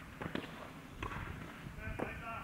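Jump squats with a hex bar: two short knocks of shoes landing on the sports court, about a third of a second in and about a second in, with hard breathing or a grunt from the athlete near the end.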